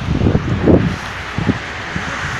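Wind buffeting a handheld camera's microphone: irregular low rumbling gusts, loudest just under a second in, over a steady hiss, with a short knock about a second and a half in.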